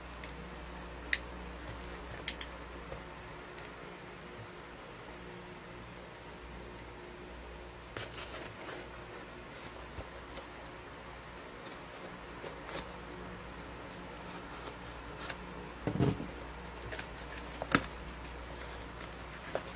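Scattered clicks, taps and rustles of a plastic-wrapped cardboard parcel being handled and cut open with a box cutter, over a steady low hum. A louder thump and rustle about 16 seconds in.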